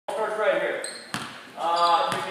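Voices calling in a gymnasium, with a basketball bouncing once on the hardwood court about a second in.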